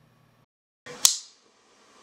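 A single sharp click about a second in, after a brief gap of dead silence, followed by faint room tone.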